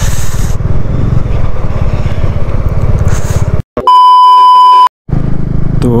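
A motorcycle's engine runs steadily while riding. A little past halfway the ride sound cuts out and a loud, steady, high beep about a second long plays, an edited-in bleep tone. The engine sound then returns.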